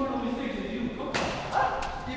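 Indistinct voices in a large, echoing hall, with one sharp knock just over a second in.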